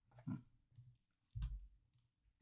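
A man's quiet breath and mouth noises, twice: a short pitched grunt-like sound about a quarter second in, then a breath with a low bump about a second and a half in.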